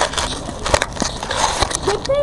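Grit and gravel crunching and crackling close to the microphone, with a run of sharp clicks: handling noise as the camera is set down on the gritty ground beside shuffling feet.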